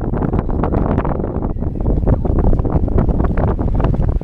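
Wind buffeting the microphone hard, a steady low rumble with rapid fluttering gusts, on a sailboat under way at sea.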